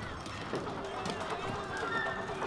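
Busy street-market ambience: many indistinct voices chattering together, with scattered light clicks and knocks.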